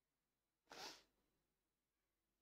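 Near silence: room tone, broken once by a short, faint hiss-like scrape a little under a second in.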